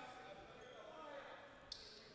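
Near silence: faint gymnasium room tone with distant, indistinct voices.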